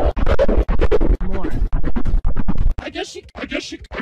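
Heavily edited cartoon soundtrack audio, voice and music mixed together, chopped into rapid stuttering cuts several times a second so that it sounds like record scratching. About three seconds in it turns thinner and higher.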